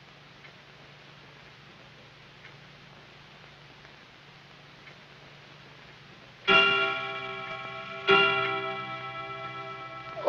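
A clock ticking faintly, then striking two o'clock: two loud bell-like strokes about a second and a half apart, each ringing on and slowly fading.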